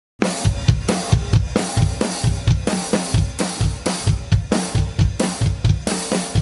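Acoustic drum kit played with sticks in a steady groove: kick drum, snare and cymbals, starting suddenly just after the opening. The song's recorded track plays underneath.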